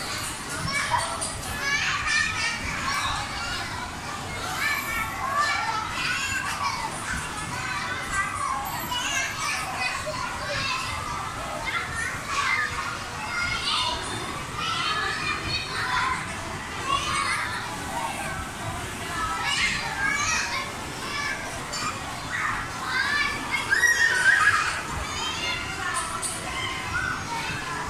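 Many children's voices at once: a continuous hubbub of children playing and calling out, with a louder outburst near the end.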